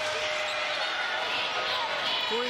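Game sounds of a basketball arena: steady crowd noise filling the hall, with a basketball being dribbled on the hardwood court.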